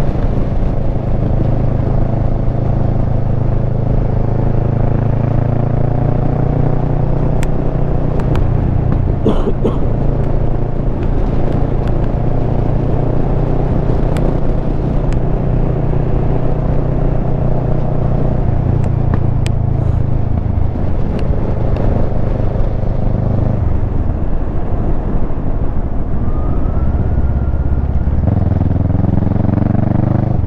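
Kawasaki Versys 650 parallel-twin engine running under way on a back road, heard from on the bike. The engine note holds steady for much of the ride, then drops in pitch a few times in the second half. A few sharp ticks are scattered through it.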